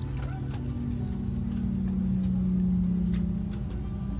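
Airbus A330-300 airliner heard from inside the cabin: a steady low engine drone with a tone that slowly falls in pitch over a couple of seconds.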